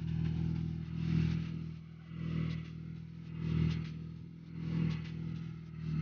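ATV engine running at low revs while the quad manoeuvres, its sound swelling and easing roughly once a second.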